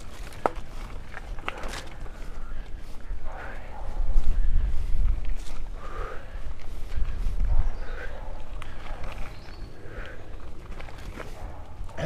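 Mountain bike ridden fast over a dirt forest singletrack: tyre and trail rumble with sharp rattling clicks from the bike, the rumble swelling louder between about four and eight seconds in. Under it, the rider's hard breathing in puffs every couple of seconds.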